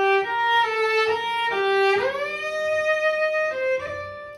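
Cello bowed: a few short notes, then about halfway through a smooth upward slide of the left hand into a higher note held for about a second and a half, and a brief note just before the end. The shift lands on the correct pitch but is played in a tight way, as a demonstration of what not to do.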